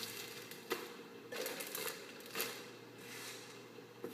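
Rustling and scattered clicks close to the microphone, with a sharp click about three quarters of a second in and further rustles about a second and a half and two and a half seconds in.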